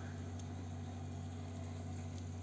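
Steady low hum of running reef-aquarium equipment such as circulation pumps, with a few steady pitched tones over a faint even hiss.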